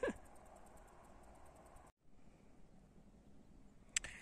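Faint outdoor background noise with no distinct source. It drops out for an instant about halfway through, and a single short click comes near the end.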